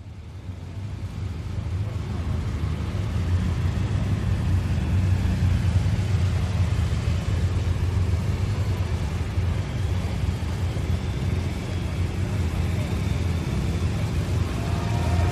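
Police motorcycle escort and a hearse driving slowly past, a steady low engine and road rumble, with a crowd murmuring.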